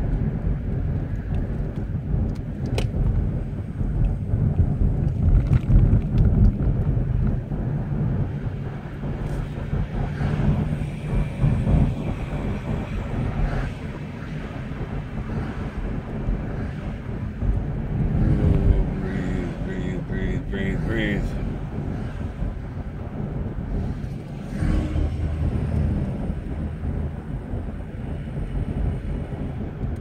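Low engine and tyre rumble inside the cabin of a moving car.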